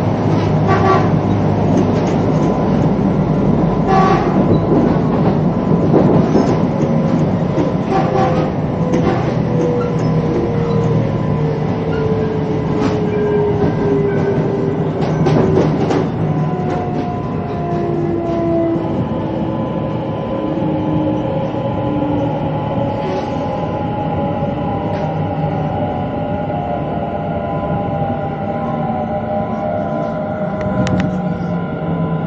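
Interior of a CSR electric multiple-unit car on the move: a steady rolling rumble with wheel clicks over the rail joints. The traction motors' whine glides down in pitch from about six seconds in as the train slows down.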